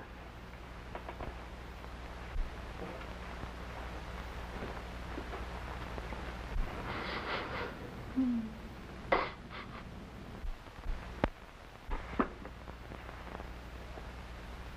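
A woman crying into a handkerchief: a few short sobs, mostly around the middle, over the steady hum and hiss of an old film soundtrack.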